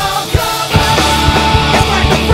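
Punk rock band recording: drums and amplified instruments playing at full volume. The low end drops back briefly, then the full band crashes back in a little under a second in.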